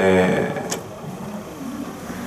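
A man's voice holding a drawn-out hesitation vowel, fading after about half a second into quieter low voice sounds, with a single click shortly after.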